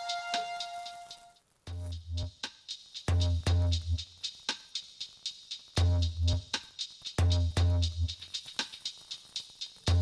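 Background music: a synth track with held tones fades out in the first second or two, and after a brief gap a new track starts with a steady electronic drum beat, deep bass thumps and quick high ticks.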